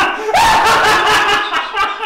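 A man laughing loudly: a long, high opening note, then a quick run of short laughs.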